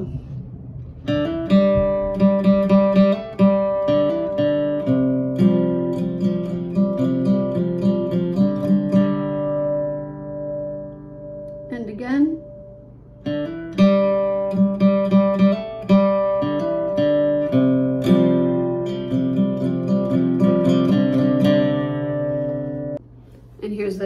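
Acoustic guitar (a Taylor) playing a slow riff on a C chord and a Csus chord, with hammer-ons on the D and G strings. The riff is played twice, with a short break about halfway and the last notes ringing out just before the end.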